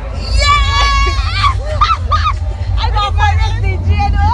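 Several people's voices talking and calling out over one another, some high and drawn-out, over a steady low rumble.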